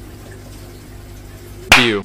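Steady running-water noise from an aquarium, with a low hum beneath it. A man's voice starts loudly near the end.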